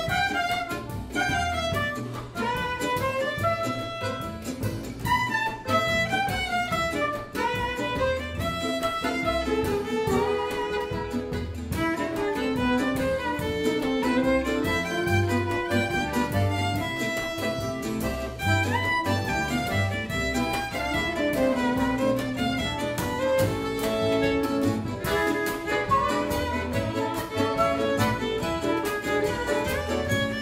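Acoustic gypsy-jazz band playing a milonga: violin carries the melody alongside soprano saxophone, over guitar, accordion, double bass and drums.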